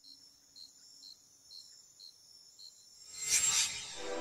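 Crickets chirping, quiet regular chirps about two a second over a faint high steady trill, followed near the end by a short whoosh.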